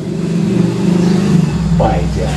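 A motor vehicle engine running in a steady low drone, growing deeper and heavier near the end.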